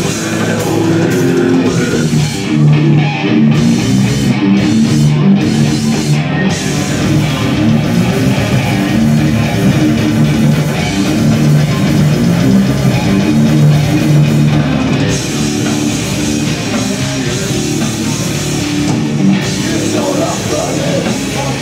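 Extreme metal band playing live: distorted electric guitar and bass riffs over a pounding drum kit, loud and unbroken, heard from among the crowd in a small club.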